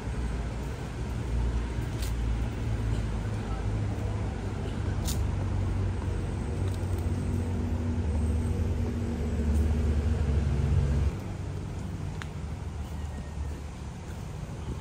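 Low engine and traffic rumble from a nearby city road, building slowly and then cutting off sharply about eleven seconds in, with a few light clicks over it.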